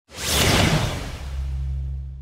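Logo-reveal whoosh sound effect: a loud rushing sweep that swells in the first half second and fades over about a second, giving way to a low steady hum.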